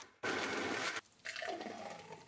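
Countertop blender whirring through apple and milk in a short run that stops abruptly about a second in. Then the thick blended drink is poured from the jug into a glass with a gurgling, filling sound.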